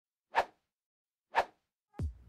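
Two identical short whoosh-like hits from an edited intro's soundtrack, about a second apart, with dead silence between them.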